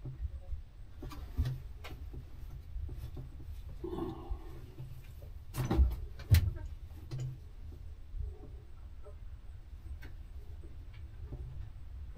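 Knocks and clicks inside a stopped race car's stripped cockpit over a steady low rumble. The loudest two knocks come close together about six seconds in.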